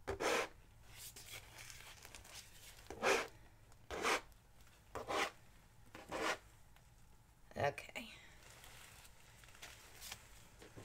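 Putty knife swiping wet acrylic paint across a canvas in short scraping strokes, about six of them at roughly one-second intervals.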